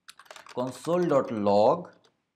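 Typing on a computer keyboard: a quick run of key clicks in the first half second, with more clicks under a man's voice that takes over about half a second in. The keys are entering a line of code, "console.log()".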